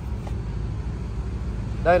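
Steady low hum of a running vehicle engine, with a man starting to speak near the end.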